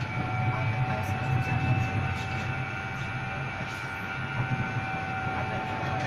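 Tram running, heard from inside the car: a steady low rumble with a few steady high whining tones over it.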